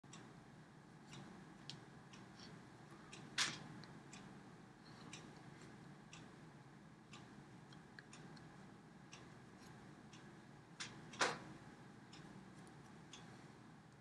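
Quiet room with faint scattered clicks and taps, and two louder sharp slaps, one about three and a half seconds in and one near eleven seconds, from hands meeting and touching the body during signing.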